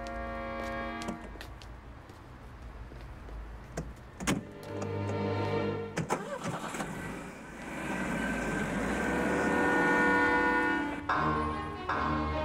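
A car running with a steady low rumble, with two sharp knocks about four and six seconds in, under background film music with long held notes.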